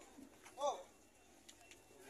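A single short animal call, rising and then falling in pitch, about half a second in. Otherwise quiet, with a couple of faint ticks near the end.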